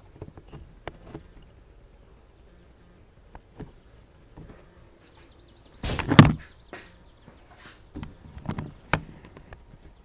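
Scattered knocks and clunks, with a loud burst of them about six seconds in and more around eight to nine seconds.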